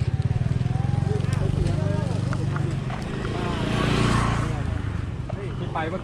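Small motor scooter engine running close by with a steady low, fast-pulsing beat, while voices carry over it. A brief rush of noise swells and fades about midway.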